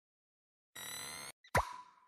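Video-editing sound effect: about three-quarters of a second in, a short steady tone lasting about half a second, then a quick plop with a falling pitch and a ringing tail that fades out.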